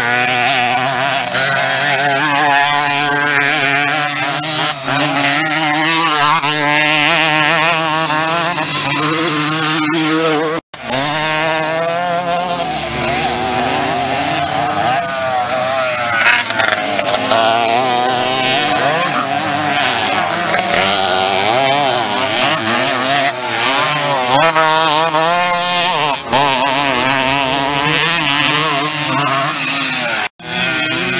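Several small two-stroke dirt bike engines, Pionier-class racing motorcycles, revving hard as they pass. Their overlapping engine notes rise and fall as the riders open and shut the throttle.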